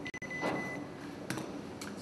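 Low room noise in a pause between speech, with a thin, steady high-pitched electronic beep lasting under a second near the start, and two faint clicks later on.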